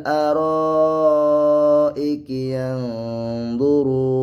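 A man chanting a Quran verse in slow, drawn-out melodic recitation: long held notes in two phrases, with a short break for breath about two seconds in.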